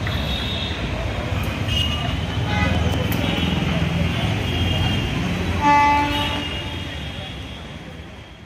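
Street traffic rumble with a vehicle horn sounding once, briefly, a little over halfway through, the loudest sound here. Faint voices in the background, and the sound fades out toward the end.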